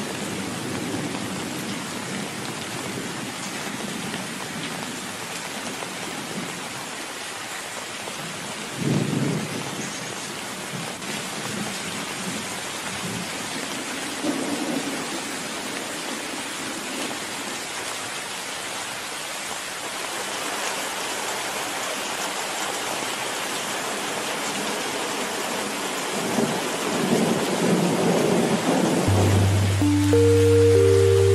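Steady rain with rolls of thunder: a short rumble about nine seconds in, a softer one a few seconds later, and a longer rumble building near the end.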